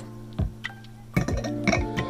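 Music with plucked-string notes: sharp note onsets that ring on as held tones.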